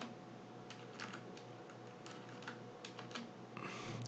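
A few faint, irregularly spaced taps on a computer keyboard over low room hum.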